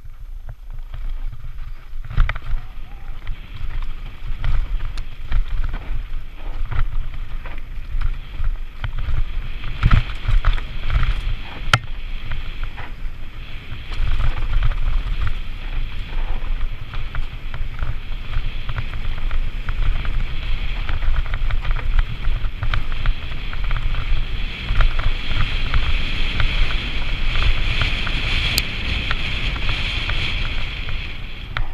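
A Santa Cruz Nomad full-suspension mountain bike rolling fast down a rough dirt singletrack, heard on a bike-mounted action camera: a steady rumble of wind buffeting the microphone and tyres on dirt, with frequent knocks and rattles as the bike hits bumps. It gets louder about halfway through.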